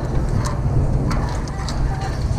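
Wind rumbling on the camera's microphone high up in the open air, with a few light knocks from rope and harness straps brushing the camera.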